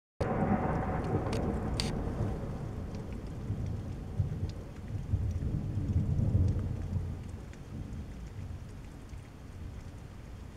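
Thunder rumbling low through steady rain. It swells about six seconds in and then dies away, with two sharp ticks in the first two seconds.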